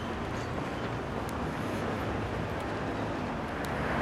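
Steady street background noise of road traffic, a low rumble with no distinct events.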